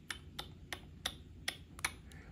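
Stylus tip tapping and flicking on the glass screen of a Surface Duo 2 while scrolling a list: about six light, sharp ticks, roughly a third of a second apart.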